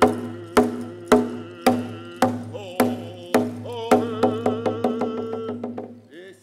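A painted hide hand drum beaten at a steady beat of about two strikes a second while a man sings over it. From about four seconds in the strikes quicken and fade, and the song stops just before the end.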